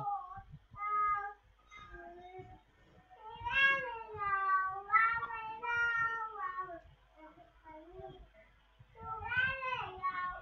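High-pitched, wavering vocal calls, repeated several times with short gaps; the longest, in the middle, runs for over a second with a falling pitch.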